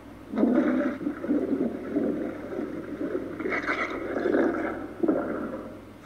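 Toilet flushing: water rushes and gurgles for about five seconds after the flush button is pressed, with a brief laugh about a second in. It is heard through a television speaker, filmed off the screen.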